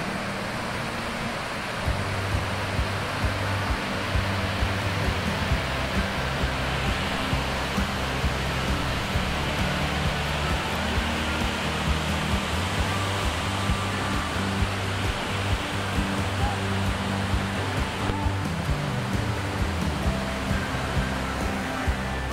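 Steady rushing roar of a waterfall's falling water, overlaid with background music that has a steady beat and bass notes, the music coming in about two seconds in.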